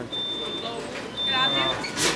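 A high-pitched electronic beep repeating about once a second, each beep about half a second long, with voices in the background.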